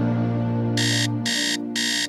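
Alarm clock beeping: three short high beeps about two a second, starting about three quarters of a second in, over held chords of soft background music.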